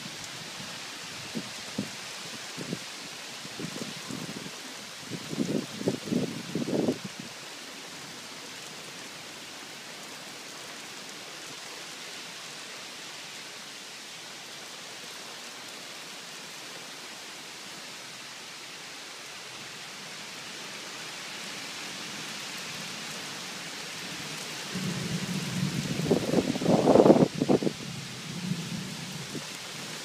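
Thunderstorm: a steady hiss of falling rain, with a roll of thunder about five to seven seconds in and a longer, louder roll near the end.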